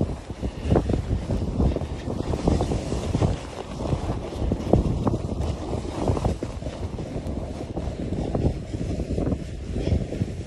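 Wind buffeting a phone microphone at speed, with the rushing hiss of riding down through soft snow; uneven gusts throughout.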